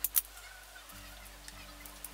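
Dressmaking shears giving two sharp snips at the very start as a cut through folded fabric ends, then only faint handling of the cloth.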